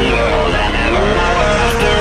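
Drift car's engine revving hard in a sideways slide, its pitch climbing through the first second, mixed over background music.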